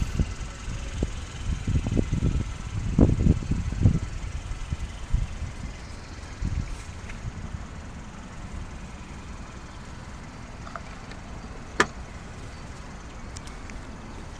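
Low thumps and handling noise on the phone's microphone as the car is walked around, over a steady low rumble. About twelve seconds in comes one sharp plastic click, the fuel filler flap being snapped shut.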